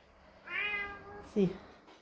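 A domestic cat meowing once, a single meow lasting just under a second.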